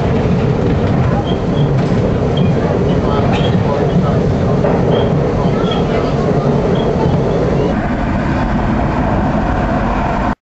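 Subway train's steady rumble, with short high-pitched chirps every second or so.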